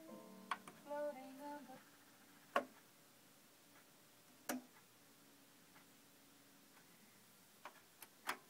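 Faint music from a vinyl LP playing on an Onkyo CP-1046F direct-drive turntable, with pitched notes in the first two seconds, then mostly quiet. A few isolated sharp clicks sound through the rest.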